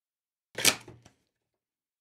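A single brief rustle of the GoPro Hero 5 box's packaging being handled as the box is opened. It starts about half a second in, is sharpest at its onset and dies away within about half a second.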